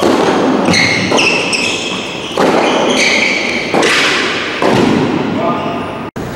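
Tennis ball struck back and forth in a rally, about five racket hits and bounces ringing in a large covered hall, with short high squeaky tones between them.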